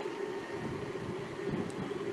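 Low, steady background noise of the stadium picked up by the radio broadcast's open microphones, with no distinct events apart from a faint tick near the end.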